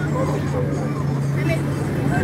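Background chatter of people talking, over a steady low hum.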